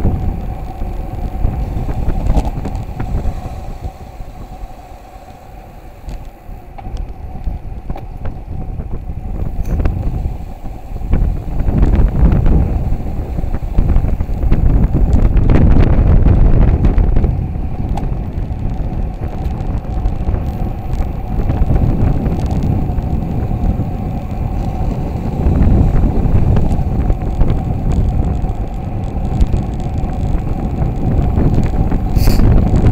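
Wind buffeting the microphone of a camera riding on a road bike during a fast descent, a loud rumble that eases off a few seconds in and is loudest around the middle.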